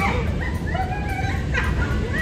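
High-pitched vocal squeals that glide up and down, with a sharp rising one about one and a half seconds in, from riders on a spinning teacup ride, over a steady low rumble.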